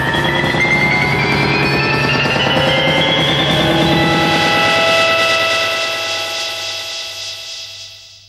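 Psychedelic rock band recording with a dense swell of sustained tones, many voices sliding steadily upward in pitch together, that fades out over the last couple of seconds.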